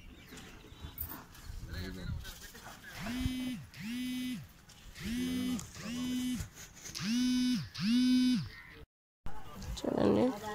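Auto-rickshaw horn sounding three double honks, each honk a steady held note, getting louder toward the end.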